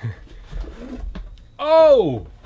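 Light handling sounds and a few soft clicks as a card box is opened and its aluminium case slid out. Near the end comes a loud, drawn-out vocal exclamation that rises briefly and then falls steeply in pitch.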